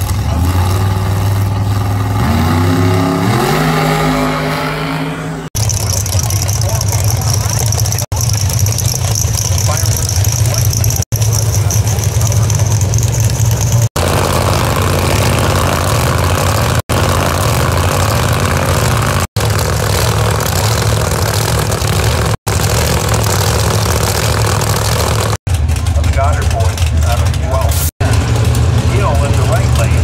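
Drag-race car engines at the starting line, one revving up with a rising pitch in the first few seconds. This is followed by a string of short, abruptly cut stretches of loud, steady engine running.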